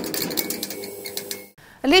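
Logo sound effect of an electric neon-style buzz: rapid irregular crackling over a steady hum, cutting off about a second and a half in.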